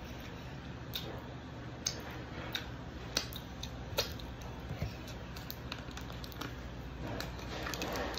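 Scattered soft clicks and smacks of someone chewing food over a steady low room hum, then a quick run of crackling clicks near the end as a plastic water bottle's cap is twisted open.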